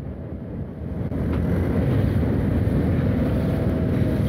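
Kawasaki Ninja 650's 649 cc parallel-twin engine running while the bike rides along, heard from onboard with wind on the microphone. The sound grows louder about a second in and then holds steady.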